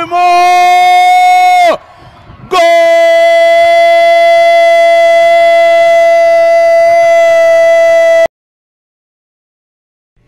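A Brazilian football commentator's drawn-out goal cry: a held 'gol' shout that drops away after under two seconds, then, after a breath, one long steady cry of nearly six seconds that cuts off abruptly.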